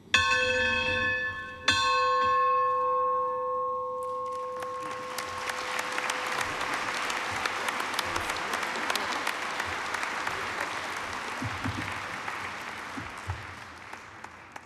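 Ceremonial brass bell struck twice, about a second and a half apart, each strike ringing on and slowly dying away. From about four seconds in an audience applauds, fading near the end.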